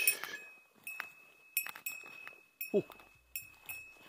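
A small bell, the kind of bear bell carried by mountain foragers, jingling again and again as its wearer walks, struck about twice a second. Each ring comes with the crunch of a footstep in dry leaf litter.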